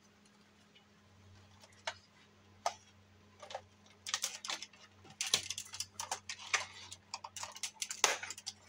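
Hard plastic clicking and rattling as a Buzz Lightyear action figure is handled and its blue plastic shield is fitted onto the arm. A few single clicks come first, then a busy run of clicks and rattles from about four seconds in, over a faint steady low hum.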